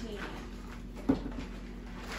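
Food packaging being handled, with one sharp knock about halfway through.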